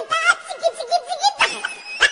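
High-pitched laughter in quick, bouncing ha-ha pulses, on a comedy skit's end-card soundtrack.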